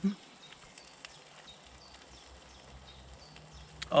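A person chewing a mouthful of food, with quiet, regular mouth clicks about twice a second, after a brief "mm" of approval at the start.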